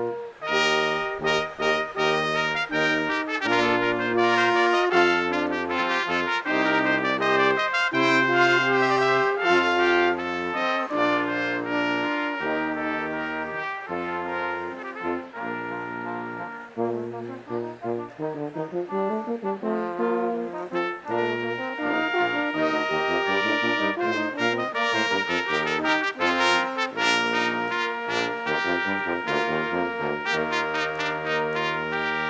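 Brass ensemble of trumpets and trombones playing processional music, sustained chords over a bass line that moves in notes about a second long. It softens briefly a little past the middle, then comes back at full strength.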